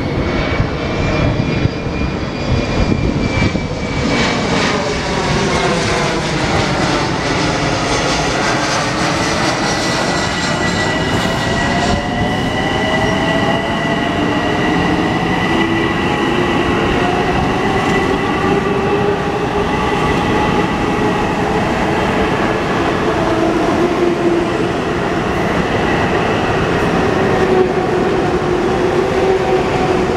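Long Island Rail Road M7 electric multiple-unit train running past on the platform track: a steady rumble of wheels on rail with electric motor whine. The whine slides down in pitch over the first several seconds, then holds at a steady high tone and a lower tone.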